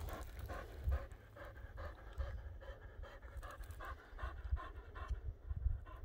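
A small dog panting quickly and evenly, about four breaths a second, stopping about five seconds in.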